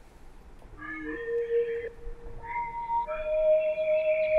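Arturia Pigments synth preset 'Fluty', a soft flute-like lead, played as a few held notes on a keyboard. It enters about a second in with a low note that steps up, then moves to higher notes, with two held together near the end.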